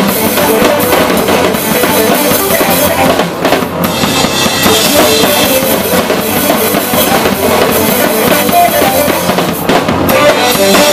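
Live band playing loud, unbroken music: a drum kit with bass drum and snare beating along with keyboards.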